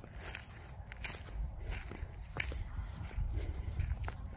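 Footsteps walking over grass and sandy ground, irregular, with a few sharp crunches and dull low thuds.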